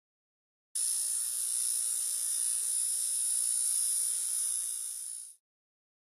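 Intro sound effect: a steady, high-pitched electronic buzz that starts suddenly about a second in, holds, tapers slightly and cuts off about five seconds in.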